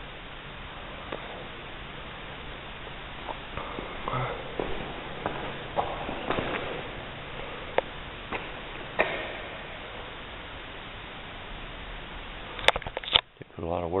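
Room tone of a large, echoing brick workshop hall: a steady hiss with scattered light clicks and knocks, and faint voices in the distance.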